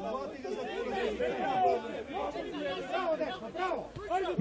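Several indistinct voices talking and calling out over one another in the background, quieter than close speech.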